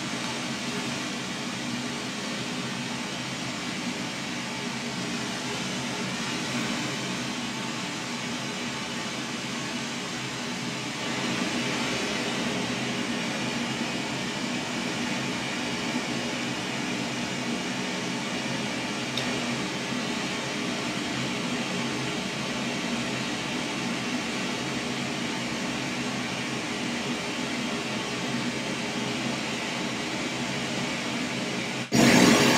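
Pink noise played through a studio monitor as the test signal for measuring the speaker's response: a steady hiss, a little louder and brighter from about eleven seconds in.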